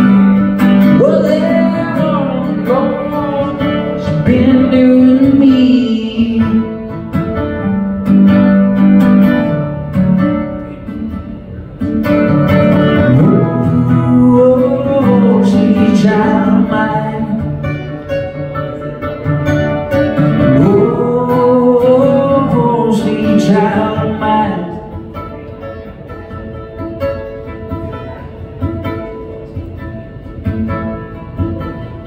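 Acoustic guitar played with a man singing over it in long phrases. Over the last several seconds the singing stops and the guitar plays on more softly.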